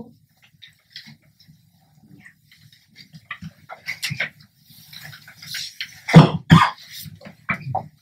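Sheets of paper rustling as they are handled and passed across a conference table, with scattered clicks and two sharp knocks about six seconds in.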